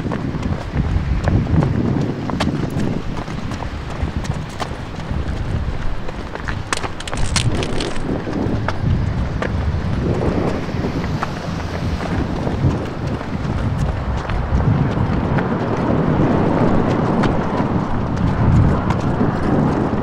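Footsteps of people running on pavement, a busy run of footfalls, with wind rumbling on the microphone.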